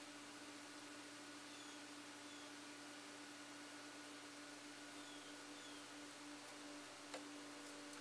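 Near silence: room tone with a faint steady hum, and one faint click about seven seconds in.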